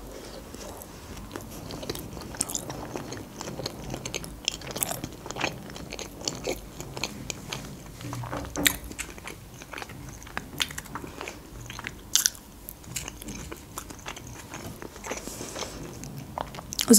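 A person chewing a mouthful of sushi roll close to the microphone: soft, irregular wet mouth clicks and crunches, with two sharper crunches around the middle.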